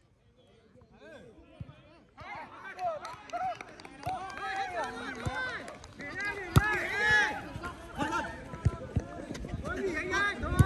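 Almost silent for about two seconds, then footballers shouting and calling to each other across the pitch. A sharp thud of a ball being kicked comes about six and a half seconds in.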